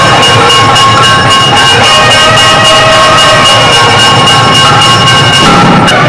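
Mangala vaadyam temple music: nadaswaram reed pipes holding long tones over steady drum beats, the tune shifting just before the end.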